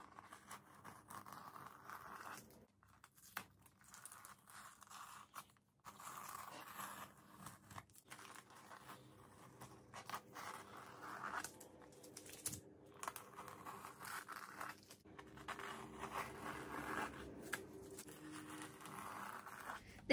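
Masking tape being peeled off a painted canvas strip by strip. The ripping is faint and comes in short, uneven stretches.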